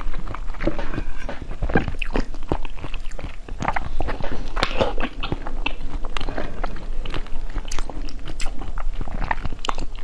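Close-miked eating of firm green jelly: repeated bites and chewing, heard as a steady run of irregular short mouth clicks and smacks.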